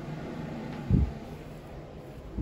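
A single short, dull low thump about a second in, over a steady low room hum.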